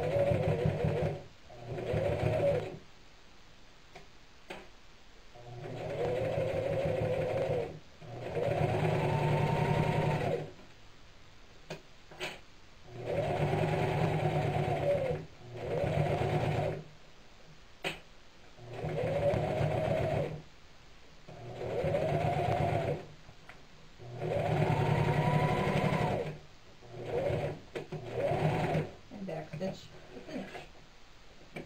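Singer electric sewing machine stitching through burlap and lining in about nine short runs of one to two seconds each, its motor pitch rising and falling within each run, with pauses between.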